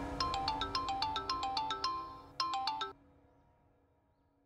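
Mobile phone ringtone: a quick, repeating melody of short bell-like notes that cuts off about three seconds in as the call is answered.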